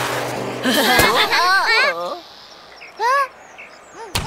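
Wordless cartoon voices: several overlapping exclamations glide up and down in pitch, with a sharp crack about a second in. A single rising and falling cry comes near the three-second mark.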